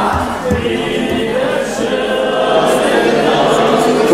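A group of voices singing together, with long held notes.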